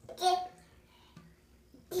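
A baby's single short vocal sound just after the start, then quiet in the tub until an adult voice starts speaking at the very end.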